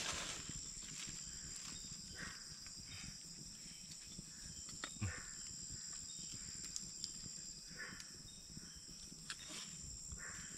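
Steady high-pitched chirring of night insects, with a few faint clicks, the clearest about five seconds in.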